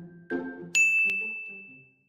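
A bright bell-like ding sound effect, struck twice in quick succession about three quarters of a second in, ringing out and fading away. Just before it, a note of light intro music sounds.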